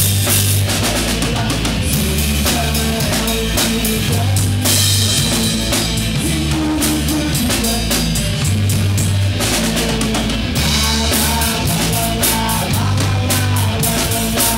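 Live rock band playing at full volume: a drum kit with constant cymbal and drum hits driving the beat under electric guitars, with low held notes changing every couple of seconds.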